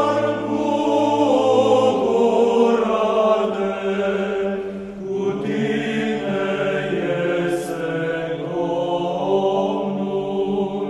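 Choral chant in long held notes over a steady low drone, the voices moving to new notes about two seconds and five seconds in.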